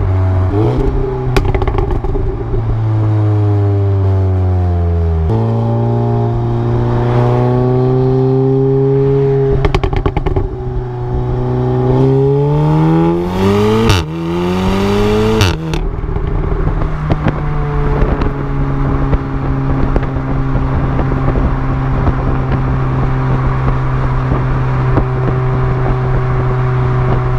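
Resonator-deleted exhaust of an Audi S3 8V facelift's turbocharged 2.0-litre four-cylinder, heard from under the rear bumper while driving. The pitch falls, then jumps up about five seconds in. It climbs steadily under acceleration past the middle, drops sharply at a gear change about fifteen seconds in, then holds steady at cruise.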